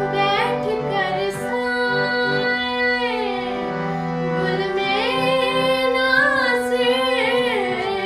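A female voice singing a ghazal melody in raag Yaman, in three phrases with slow gliding ornaments, over steady sustained instrumental accompaniment.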